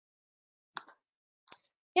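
Near silence on a webcast microphone, broken by two short, faint clicks: one just under a second in and another about half a second later.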